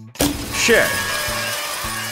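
Celebratory answer-reveal sound effect: a sudden burst of crackling noise a moment in, lasting about two seconds, with a short swooping sound early on and a low held note beneath.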